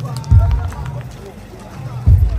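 Low thuds from a handheld camera being carried by someone walking, one shortly after the start and another at the very end, over faint background chatter.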